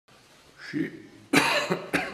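A man coughs into his fist: one loud, sudden cough about a second and a half in, with a short sharp catch just at the end.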